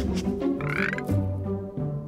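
Om Nom's croaky, frog-like cartoon vocal sounds, with a short rising squeal about half a second in, over background music with low bass notes.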